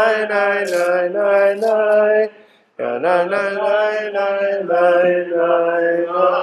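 A solo voice chanting Hebrew liturgy in long, held phrases. The singing breaks off a little after two seconds in, and a new phrase starts about half a second later.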